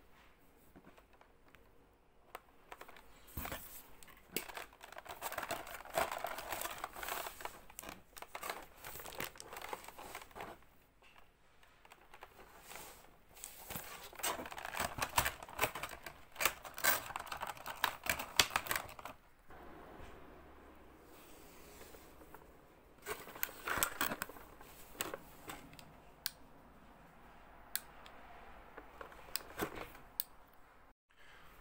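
Clear plastic blister tray crinkling and crackling as it is handled and flexed while a toy robot figure is worked out of it, in three bouts with quieter pauses between.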